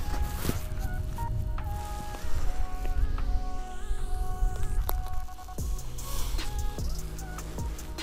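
Background music: held notes that step from pitch to pitch every half second or so, over a steady low rumble.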